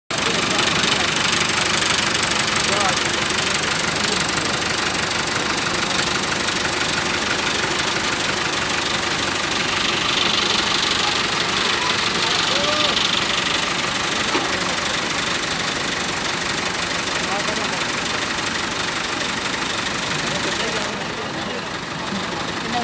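Fiat 640 tractor's diesel engine running steadily while the tractor is loaded onto a truck bed.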